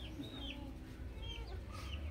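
Domestic hens clucking, a few short scattered calls over a low steady rumble.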